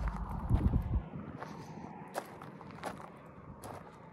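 Footsteps on loose gravel and stony ground: irregular, scattered crunching steps. A low rumble runs under the first second and then stops.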